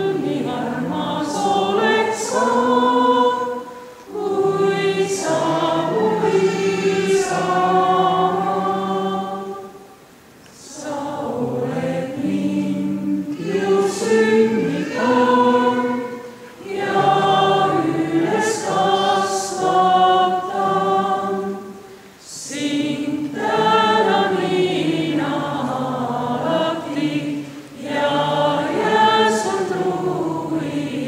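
A mixed choir of male and female voices singing in sustained phrases, with short breaks for breath about every six seconds.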